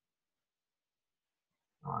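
Dead silence, then a man saying "All right" near the end.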